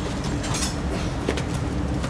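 Cardboard box lid and plastic wrapping handled as the box is opened, giving a few short clicks and rustles about half a second in and again just after a second in, over a steady low background rumble.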